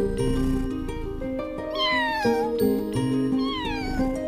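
Gentle music with held notes, over which a cat meows twice with a falling pitch: once about two seconds in and again near the end.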